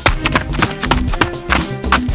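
Upbeat background music with a steady quick beat, about four strokes a second.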